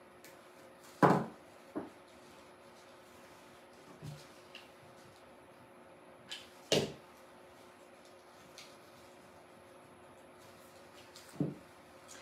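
A handful of short, sharp snips and clicks from hand clippers cutting the stems of artificial flowers, spaced irregularly, the loudest about a second in.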